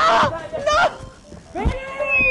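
Three short, wavering, bleat-like cries, the last one longer and arching in pitch.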